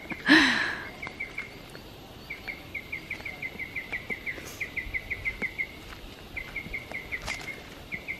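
A small forest animal calling in quick runs of short, high, even chirps, several a second, pausing now and then. A brief louder voice sound comes just after the start.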